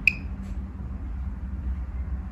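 A single short, high electronic beep from a handheld Geiger counter right at the start, with a fainter click about half a second in; after that only a low steady background rumble.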